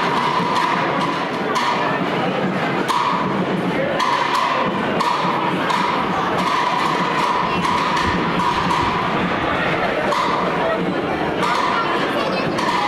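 Crowd of onlookers talking in a large, echoing indoor hall, with scattered knocks and thumps.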